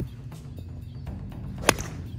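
Golf iron striking a ball off range turf: one sharp, loud crack of contact near the end, over background music.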